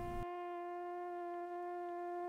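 One long held musical note, steady in pitch: the closing note of a TV distributor's logo jingle from an old broadcast recording.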